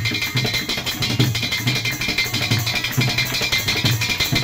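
Live devotional folk music: a one-string plucked instrument with a gourd body, played over a steady drum beat of about three strokes a second.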